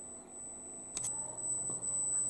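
Quiet room tone under a faint, steady, high-pitched electronic whine, with a single click about a second in followed by a faint low hum.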